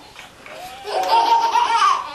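Baby laughing: a high, squealing giggle that builds from about half a second in and becomes loud, held near one pitch.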